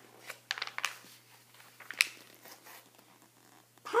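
Pages of a hardcover picture book being turned by hand: paper rustling and crinkling, with a few sharp clicks, the sharpest about halfway through.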